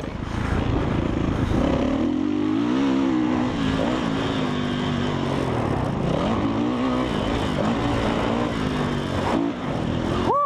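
Dirt bike engine revving up and down while riding a motocross track, its pitch rising and falling through the gears and throttle changes. Heard through a helmet-mounted GoPro in its standard closed case, close to the rider's mouth.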